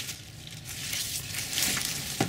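Soft rustling and crinkling of garden leaves and stems as a hand moves in among them, after one short click right at the start.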